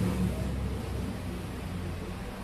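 Steady low background hum with an even hiss, with no distinct clicks or other events.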